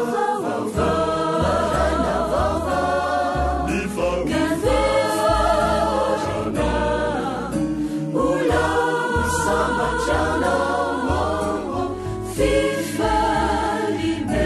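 A choir singing a Christian song over instrumental backing with a bass line that moves note by note.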